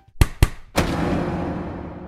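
Logo stinger sound effect: two sharp hits in quick succession, then a third that rings on and fades away over about two seconds.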